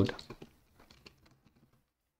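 Faint computer keyboard keystrokes: a quick burst of typing lasting about a second.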